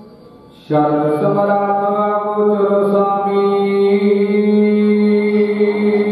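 Sikh devotional chanting (kirtan) of held, steady notes. After a brief lull it comes in suddenly under a second in, shifts note about half a second later, then sustains one long chord.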